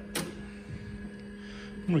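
Apple Lisa Twiggy floppy drive ejecting its diskette: one sharp click just after the start, then a faint sliding hiss as the disk is drawn out of the slot.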